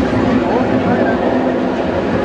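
Inverted steel roller coaster train rolling along its track, mixed with the voices of a fairground crowd.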